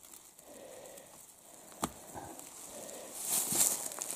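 Mostly quiet background with one sharp click about two seconds in and a brief rustle near the end.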